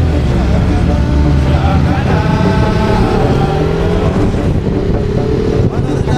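Motorcycle engine running under way on the road, its pitch rising slowly in the second half as it picks up revs.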